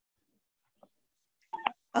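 Near silence on a video-call audio feed for about a second and a half, then a short breath and voice sound as a person starts to speak near the end.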